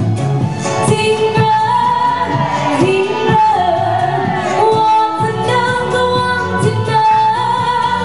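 A woman singing a pop song live into a microphone through PA speakers, over amplified backing music with a steady drum beat. She holds long, wavering notes.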